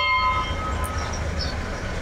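Small church bell in a stone bell-cote, rung by pulling its rope: one strike right at the start, ringing with several clear tones that fade away over about a second and a half.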